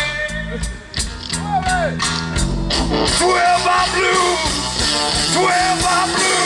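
A live rock band playing with drums, bass guitar and electric guitar. The sound fills out and grows a little louder about three seconds in.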